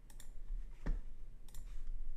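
Computer mouse and keyboard clicks: two pairs of sharp clicks, one near the start and one about one and a half seconds in, with a duller knock just before the second second.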